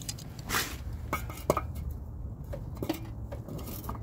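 Metal clinks and rattles of an adjustable oil filter wrench being handled and fitted, a handful of short sharp taps spaced over the seconds, over a low steady rumble.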